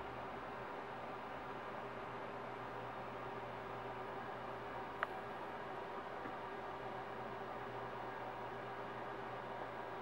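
Steady low hum and hiss of a running desktop computer's fans, with a single brief click about halfway through.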